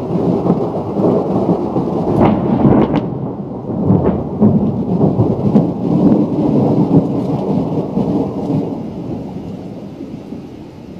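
Thunder rolling: a long, low rumble that swells about a second in and fades near the end, with a few short sharp cracks two to four seconds in.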